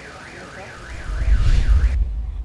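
An electronic siren tone warbling up and down about three times a second, as from a car alarm. From about a second in, a loud low rumble builds underneath it.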